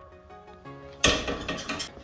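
Background music, and about a second in a short metallic clatter and rattle as the spring-mounted lawnmower seat is pressed down by hand.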